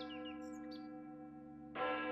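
Large bronze church bell ringing with many steady tones: the hum of an earlier stroke fades, then the bell is struck again near the end and rings out. A few short bird chirps sound in the first half second.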